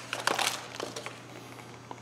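Light handling noise, a few soft clicks and rustles mostly in the first second, over a steady low hum.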